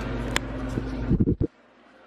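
Steady low hum of a room fan or air-conditioning unit, with a sharp click and a few knocks from the camera being picked up and handled. The hum stops abruptly about one and a half seconds in, leaving faint room tone.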